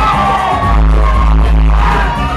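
Loud dance music from a club sound system, with deep bass notes held in long steps under a steady beat and gliding higher tones over it.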